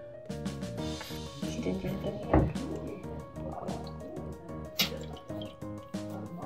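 Background music with a steady beat, with a couple of brief water drips about two and a half seconds in and near the end.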